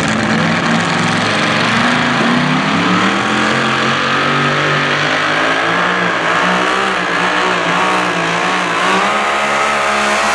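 Mini modified pulling tractor's V8 engine running at high revs under load as it drags the weight-transfer sled. The note holds steady for the first couple of seconds, rises in pitch about two to three seconds in, then stays high and wavers to the end.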